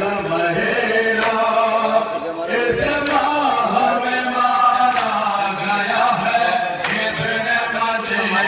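A man chanting a noha, a Shia Muharram lament, in long held lines through a microphone and loudspeaker. About every two seconds a sharp slap falls in time with it, as from mourners beating their chests in matam.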